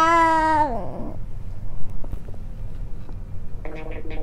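A long drawn-out voice held on one note, rising slightly and then falling away before one second in. A few faint taps follow, and near the end comes a brief steady electronic tone as the tablet screen is touched.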